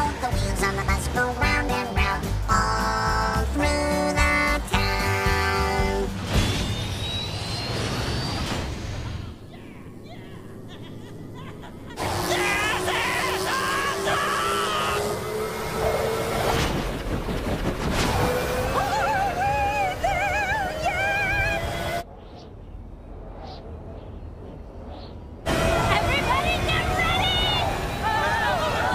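A children's song with a band accompaniment winds up over the first few seconds, then gives way to a cartoon soundtrack of background score and sound effects, with voices calling out over it in the middle.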